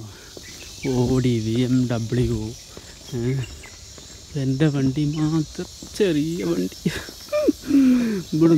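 Steady high-pitched chirring of insects in the background, heard under a man talking.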